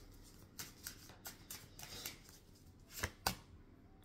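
A deck of tarot cards being shuffled by hand: a series of soft card clicks and flicks, the two sharpest close together about three seconds in.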